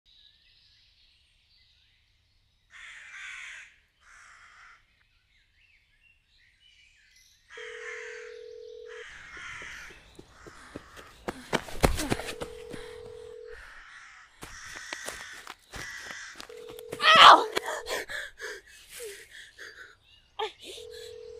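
Horror-trailer sound design: crows cawing in short bursts, with a steady low tone of about a second and a half repeating every four to five seconds. A loud sharp hit comes near the middle, and the loudest moment is a rising cry about three seconds before the end.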